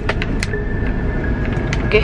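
Car cabin noise while driving slowly on an unpaved lane: a steady low rumble of engine and tyres, with a few sharp clicks near the start and a thin steady high tone from about half a second in.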